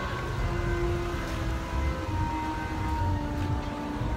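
Carousel music playing, with long held notes, over a low rumble of wind on the microphone.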